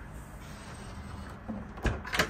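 A single sharp knock near the end from the galley's cabinetry being handled, like a door or latch shutting. It comes over a steady low background hum.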